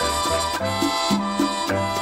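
Latin-style dance-band music played from an LP record, with a bass line that repeats its figure and a steady dance rhythm.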